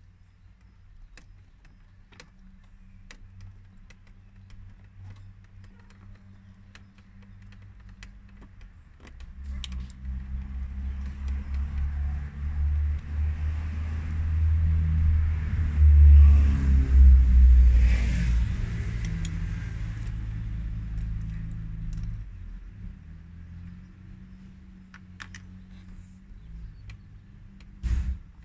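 A motor vehicle driving past, a low rumble that grows louder from about a third of the way in, is loudest just past halfway, then fades away. Light clicks and rattles from plastic dashboard trim and steering-column parts being handled come and go throughout, with a sharp knock at the very end.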